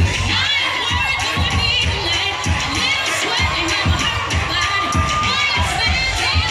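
A crowd of young spectators screaming and cheering in a gymnasium, over dance music with a heavy bass beat played through the gym's speakers.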